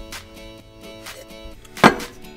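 Background music with guitar, and near the end one sharp knock, a cup set down hard on the counter.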